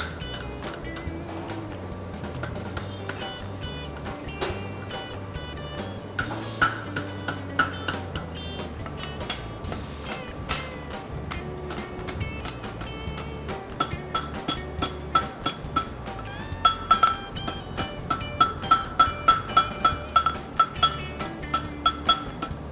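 Background music playing throughout. From about two-thirds of the way in, a ringing hammer strike on an anvil repeats steadily, a little over twice a second, growing louder toward the end, as hot steel bar stock is forged into a heart bar horseshoe.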